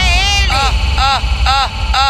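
Brazilian mega funk mix: a short vocal sample that rises and falls in pitch, repeated about twice a second over a heavy bass.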